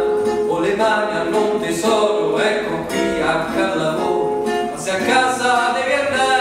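A voice singing an Italian children's song over an acoustic guitar.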